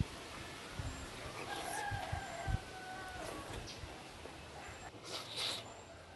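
A rooster crowing once, a long call starting about a second and a half in. A brief rustling noise follows near the end.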